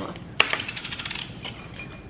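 A small metal jar lid dropped onto a hard tabletop: one sharp click, then a quick rattle of about a second as it wobbles to rest, like a coin settling.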